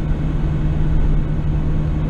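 A moving car heard from inside its cabin: a steady low rumble of engine and road noise, with a steady low hum under it.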